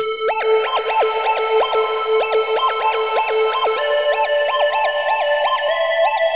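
Electronic song played back from an FL Studio playlist: a stepping synth lead melody over steady sustained synth tones, with further held notes joining about four seconds in.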